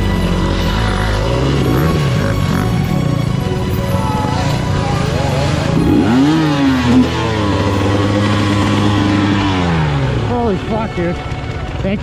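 KTM dirt bike engine running, revved up about six seconds in and held there for a few seconds, then dropping back near ten seconds, as the stuck bike is pushed free.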